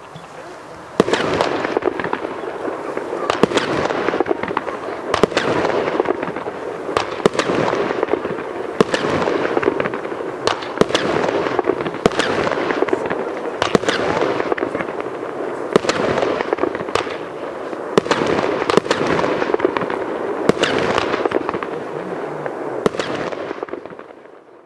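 A consumer firework battery (Röder Blackboxx 'Süßes Gift') firing shot after shot, with bursts of stars and dense crackling. It starts about a second in and dies away near the end.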